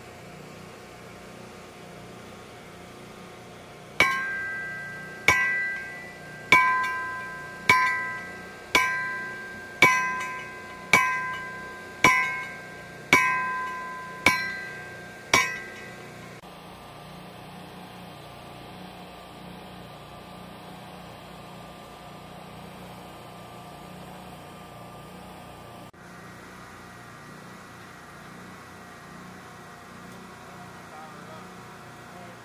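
Sledgehammer striking a steel pipe stake to drive it into the ground: eleven blows about one a second, each with a clear metallic ring that dies away before the next.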